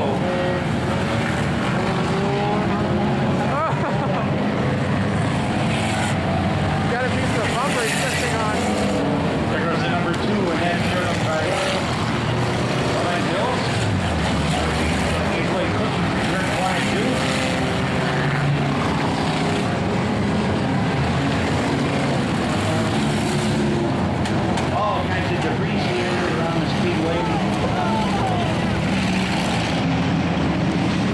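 A pack of enduro stock cars racing, many engines running hard at once. Their pitches rise and fall as the cars lap and pass, making a steady, dense wash of engine noise.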